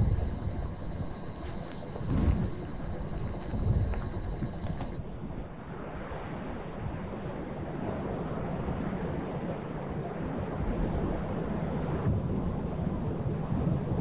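Low, rumbling wind noise with a few deep thuds in the first four seconds. A faint steady high tone cuts off about five seconds in.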